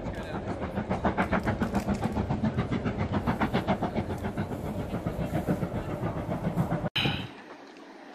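Steam locomotive hauling a train, its exhaust beating fast and evenly at about four or five beats a second. The beat cuts off abruptly a little before the end.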